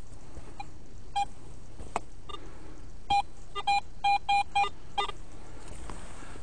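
Garrett AT Pro metal detector giving a string of short electronic beeps as its coil sweeps the ground, signalling metal targets beneath it. There are about eight beeps, clustered from about three seconds in, and some are lower in pitch than others. A single sharp click comes about two seconds in.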